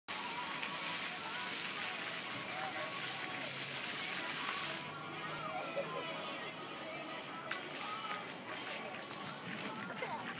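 Splash-pad fountain jets spraying, a steady hiss of water that cuts off suddenly about five seconds in. Children's voices are heard faintly throughout.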